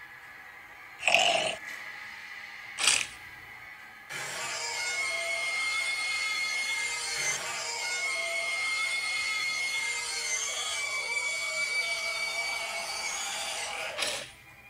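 Two short, loud sound effects about one and three seconds in, then horror-film soundtrack music with sustained held tones from about four seconds in.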